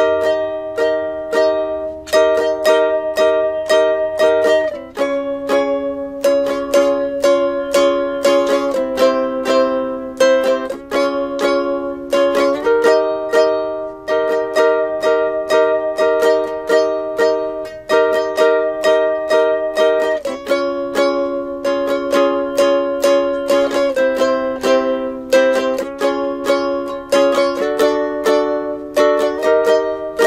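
Ukulele strummed in a quick, even rhythm through the chord progression E-flat, D-flat, C, D-flat, D and back to E-flat. The chord changes every few seconds, and each chord rings under the rapid strums.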